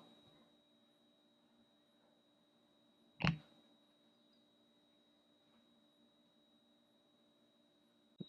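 Near silence, broken about three seconds in by a single short, sharp click: the Samsung Galaxy S10e's battery flex-cable connector snapping onto its socket on the board.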